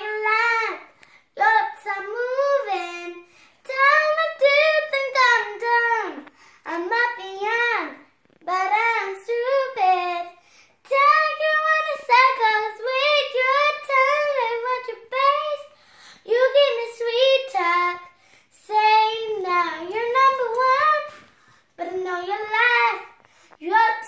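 A young girl singing unaccompanied, a pop melody in phrases of a second or two with short breaths between.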